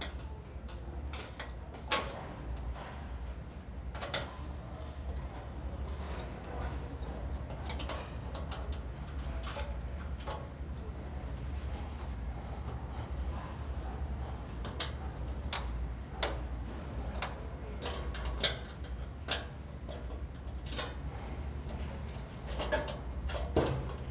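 Small metal wrench ticking and clicking on the bolts of a steel switchgear cover panel as they are undone, in irregular clicks with a couple of sharper knocks early on. A steady low hum runs underneath.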